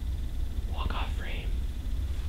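A man whispering briefly, about a second in, over a steady low hum.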